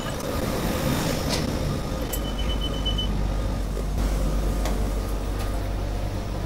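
Railway station and train noise: a general noisy hiss with scattered clicks, then a steady low train hum setting in about two seconds in, with a single high beep lasting about a second at that point.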